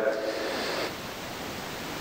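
Steady hiss of room noise in a reverberant church, as the echo of a man's voice dies away at the start.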